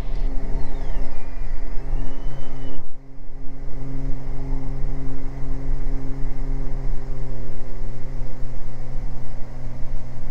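Beechcraft G58 Baron's twin six-cylinder piston engines and propellers running steadily at takeoff power during the climb-out, heard inside the cockpit as a loud drone with steady tones. A faint whine glides down and back up during the first three seconds, and the sound dips briefly about three seconds in.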